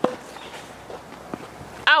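Tennis racket striking a ball once with a sharp pop right at the start, followed later by a few faint knocks.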